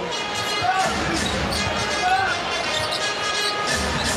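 Basketball being dribbled on a hardwood court amid arena crowd noise, with music playing in the background.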